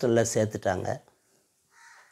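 A man speaking in Tamil for about the first second, then two faint, short bird calls near the end.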